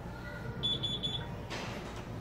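Four short, high-pitched electronic beeps in quick succession, a little after the start.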